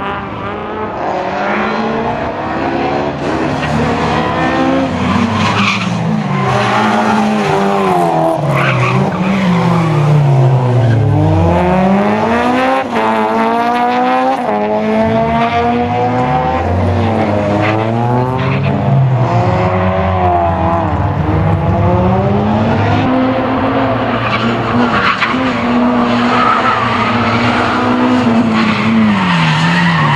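Honda Civic hatchback race car's engine revving hard, its pitch rising and falling again and again as it accelerates, brakes and shifts through a tight course, with tyres squealing in the corners.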